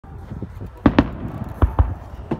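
Fireworks bursting in the sky: four sharp bangs in two quick pairs, the first pair about a second in and the second near the end, with smaller pops between them.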